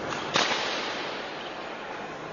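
A single sharp crack about a third of a second in, echoing in a large hall: a table tennis ball struck hard during a rally.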